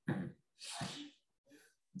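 A man's soft, stifled sneeze: a short breathy burst in two parts, far quieter than his speaking voice.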